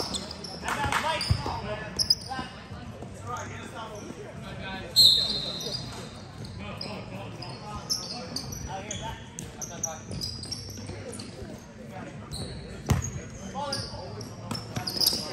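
Basketball game in an echoing gym: a ball bouncing on the hard court floor and scattered voices of players and onlookers, with a loud, short, high-pitched referee's whistle about five seconds in.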